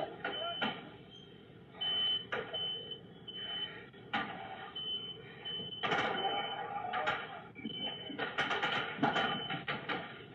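Smoke alarm beeping in repeated groups of three short, high beeps, the temporal-three fire-alarm pattern. Several sharp pops break in between, from ammunition going off in the burning garage.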